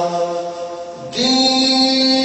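A man's voice chanting a zakir's recitation through a microphone in long held notes: one note fades away over the first second, and a new, higher held note starts just after a second in.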